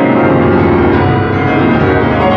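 Concert grand piano played loud: a thick, sustained mass of low chords ringing together.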